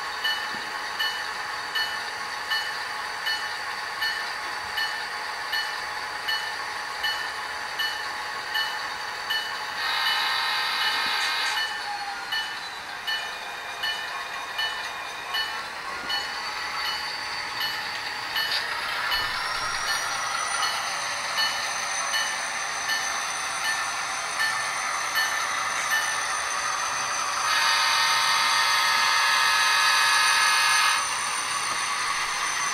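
Sound decoder of a model diesel locomotive, heard through its small speaker: a bell rings steadily at about one and a half strokes a second. The horn sounds a short blast about a third of the way in and a longer one near the end. The engine sound rises in pitch about two-thirds through.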